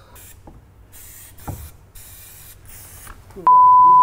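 Short, uneven hisses from an aerosol lubricant spray can that is running empty. About three and a half seconds in, a loud steady censor beep.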